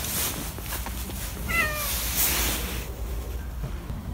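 A cat gives one short, high meow about halfway through.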